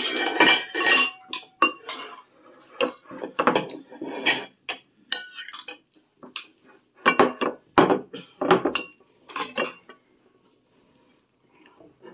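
Serving utensil clinking against a dish and a ceramic plate as green beans are spooned onto the plate: a run of sharp, irregular clinks that stops about ten seconds in.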